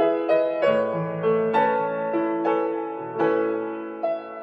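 Slow, gentle piano music, a new note or chord struck about every half second, each one fading out.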